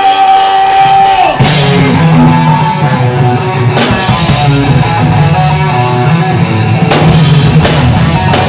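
Live heavy rock band: a held, ringing guitar note for the first second or so, then drums, bass and distorted electric guitar come in together and play on at full volume, with cymbal crashes.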